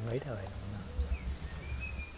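Birds chirping outdoors, a short falling chirp repeated about three times a second with a few gliding whistles, over a low rumble.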